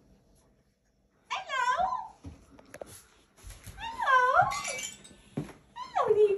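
Alaskan malamute vocalizing: two drawn-out calls that waver up and down in pitch, the first a little over a second in and the second near the middle, with a few small clicks between them and a single knock near the end.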